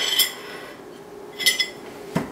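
A ceramic dinner plate with a metal fork on it being set down and handled on a table: two short clinks, one just after the start and another about a second and a half in, each with a brief ring.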